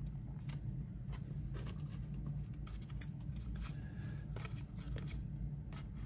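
Faint handling of trading cards: cards sliding and ticking against each other as a stack is held and sorted by hand, with a few sharp little clicks, over a steady low hum.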